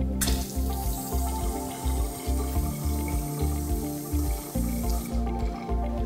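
Touch-free electronic sensor faucet (Chicago Faucets eTronic 40) running a steady stream of water into the sink. It starts just after the start and shuts off by itself about five seconds in.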